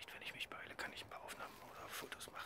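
A man whispering softly, the words indistinct.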